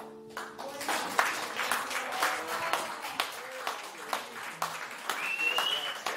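A final guitar chord ringing out and fading in the first half-second, then a small audience clapping, with voices among the applause.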